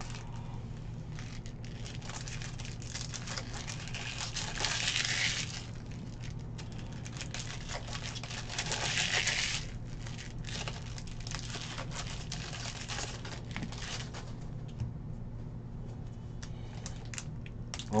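Plastic wrapper of a Topps baseball card pack crinkling as it is handled, with two louder crinkling bursts about four and nine seconds in, and light clicks of cards being handled.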